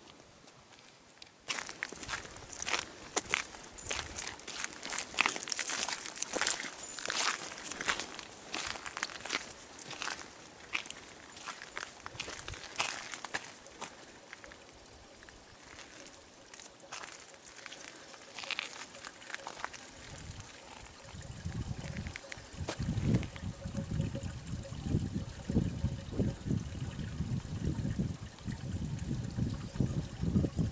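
Irregular crunching, slushy footsteps in wet snow through the first half. From about two-thirds of the way in, low irregular rumbling thuds take over.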